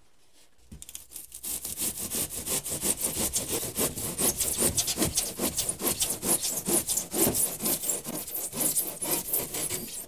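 Handsaw cutting through 2-inch extruded polystyrene foam board in quick, even back-and-forth strokes, starting about a second in.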